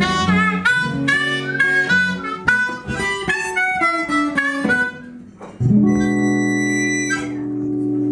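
Live harmonica solo over guitar accompaniment, a run of quick melodic notes. After a brief drop in level, harmonica and guitar close on one long held chord, the song's final chord.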